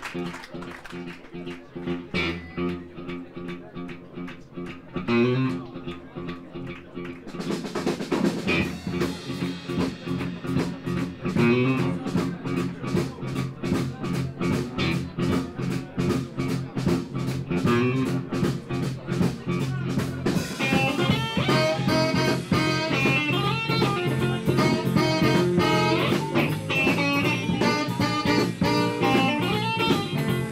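Live Texas blues band playing, with electric guitar, bass and drums. The playing is sparser at first and fills out with a steady drum beat about seven seconds in. A brighter lead line comes in over the groove about twenty seconds in.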